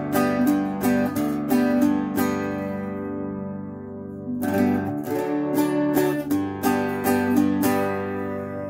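Bajo quinto, a Mexican ten-string guitar with paired courses, being picked: runs of notes and chords. In the middle one chord is left to ring for about two seconds before the playing starts again, showing off the instrument's resonance.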